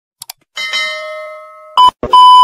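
Two quick clicks, then a notification-bell chime from a subscribe animation that rings and fades over about a second. Near the end a loud single-pitch test-tone beep cuts in.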